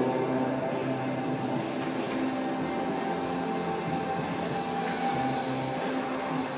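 Soft background music with long held chords at a steady volume.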